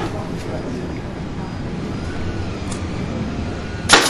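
Steady low background rumble with faint distant voices, and a single sharp knock just before the end.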